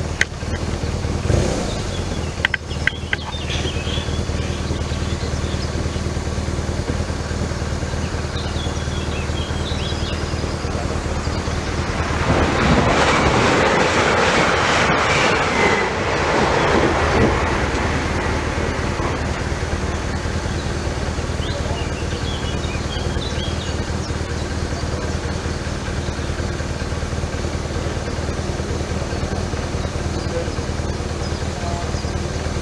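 A Stadler FLIRT electric multiple unit passing over a level crossing. Its wheels on the rails and its running gear rise to a loud rush for about six seconds in the middle, then fade.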